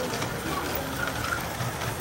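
LGB garden-scale model train running past on overhead track: a steady whirring rumble from its motor and wheels on the rails, with faint chatter in the shop behind it.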